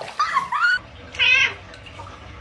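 A cat meowing: about three short, bending meows, the last one higher, louder and wavering, about a second in.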